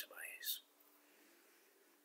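A voice speaking briefly in the first half-second, then faint room tone with a low steady hum.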